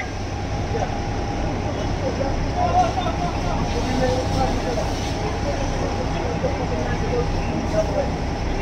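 A steady low engine drone runs throughout, under scattered voices of people talking and calling out.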